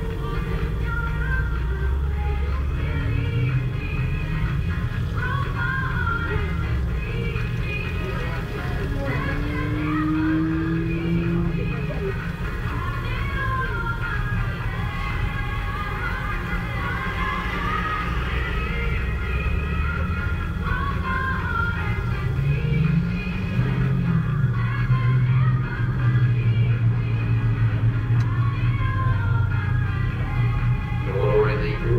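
Music with a singing voice playing steadily inside a car's cabin, with a strong low bass line under it.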